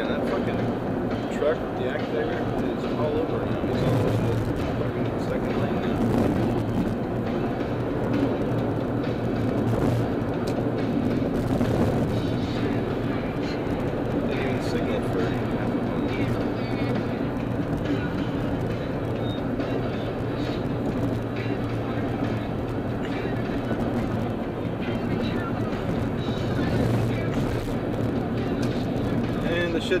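Steady road and engine noise inside a car's cabin at freeway speed, an even rush of tyre noise over a low drone.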